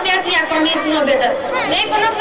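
Speech: a voice talking without a break, picked up through a microphone, with no other sound standing out.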